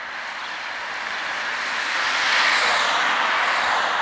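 A road vehicle passing by, its tyre and engine noise swelling to a peak about two and a half seconds in and starting to fade near the end.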